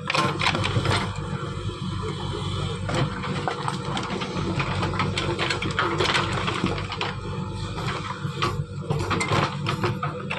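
JCB backhoe loader's diesel engine running steadily under load as the backhoe bucket digs into rocky ground, with repeated knocks and clatter of stones and metal throughout.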